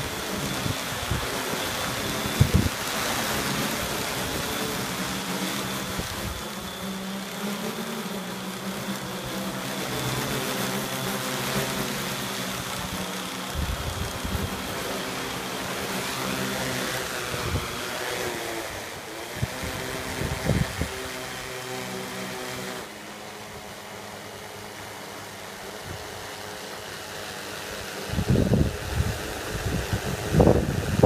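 Quadcopter drone's four electric motors and propellers running in a steady, multi-toned buzz as it hovers and flies low. About 23 s in, the buzz drops to a quieter, lower hum.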